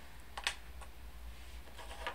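A few light clicks and taps of laser-cut wooden pieces being handled and set down on a desk, with one sharper tap about half a second in, over a low steady hum.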